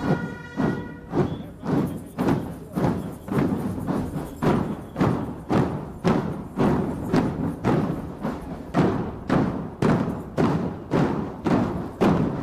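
Marching drum band's percussion section beating a steady cadence of heavy drum strokes, about two a second, with no melody instruments playing.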